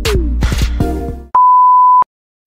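Background music with a steady beat stops abruptly about a second and a quarter in. A loud, steady, single-pitch test-tone beep replaces it, the kind played over TV colour bars, and cuts off sharply at the end.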